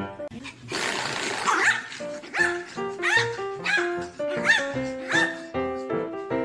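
A dog barking over background music: a series of short barks, about one every three-quarters of a second.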